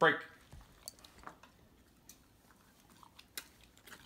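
A sharp spoken "break!", the release word for waiting dogs, then the dogs eating their reward: scattered small crunches and clicks of chewing.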